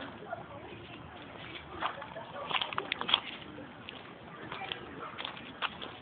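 A toddler's brief babbling and vocal sounds, short and scattered, over quiet outdoor background.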